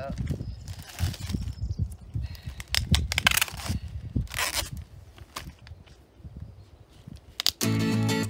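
Clear plastic packaging crinkling and crackling as a pond liner is handled and pulled out of it, in irregular bursts for about five seconds, then quieter. Acoustic guitar music comes in near the end.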